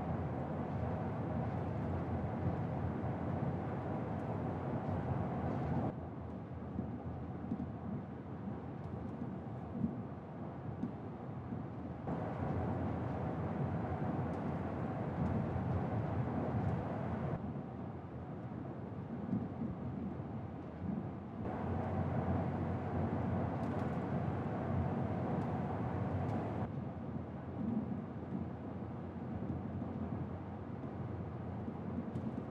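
Tyre and road noise inside a Toyota Tacoma pickup's cab at highway speed, about 55 mph: a steady rumble. It switches every five or six seconds between the untreated cab, louder with more hiss, and the cab lined with sound-deadening material, duller and a few decibels quieter.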